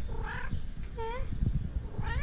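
A cat meowing twice, short calls that bend in pitch, about a second apart. A low rumble runs underneath.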